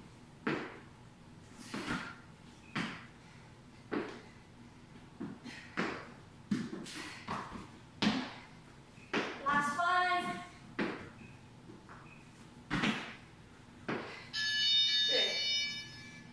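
Modified burpees on a rubber gym floor: short, sharp thumps of feet and hands landing, roughly one a second, spacing out toward the end. Near the end a steady high tone sounds for about a second and a half.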